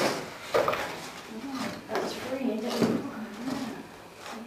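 Indistinct talking mixed with handling of a cardboard box and its plastic-wrapped contents, with a few sharp cardboard knocks, the loudest about half a second in.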